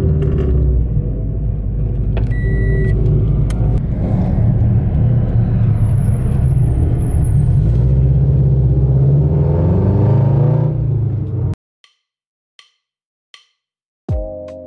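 Car engine and exhaust running under way, heard from inside the car, its pitch climbing near the end as it accelerates. It cuts off abruptly at about eleven and a half seconds, leaving a few faint ticks.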